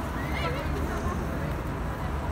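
City street traffic: a steady low rumble of vehicles, with one short high-pitched sound that rises and falls about half a second in.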